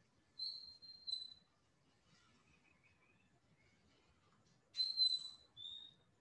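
Faint, high, thin whistled notes in two short groups: one about half a second in, the other near the end. Each is a steady note, and the last one drops slightly in pitch.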